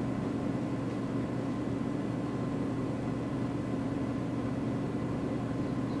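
Steady low mechanical hum with a faint hiss, unchanging throughout: the room's background noise from a fan or ventilation.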